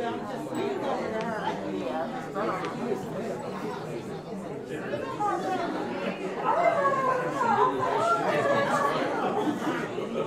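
Several people talking at once in a large room, a murmur of overlapping conversation with no one voice clear. A closer voice grows louder for a few seconds in the second half.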